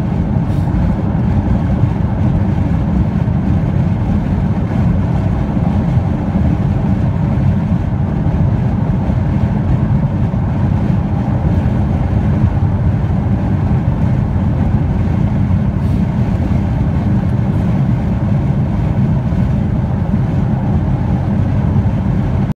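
A car driving at highway speed, heard from inside the cabin: a steady, unchanging low rumble of road and engine noise.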